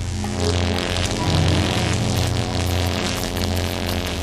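Dramatic background music with a low steady drone, overlaid by a loud rushing, crackling sound effect for a supernatural energy blast.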